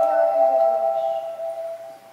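Marimba played with four mallets: a chord rings on and fades, while a lower line falls in pitch beneath it, the sound dying away toward the end.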